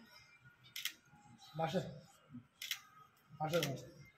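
A man's voice in two short, quiet phrases, each beginning with a hiss, with two sharp clicks between them.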